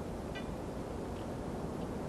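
Steady low rumble and hiss of background noise with no distinct event, with a faint, very brief high chirp about half a second in.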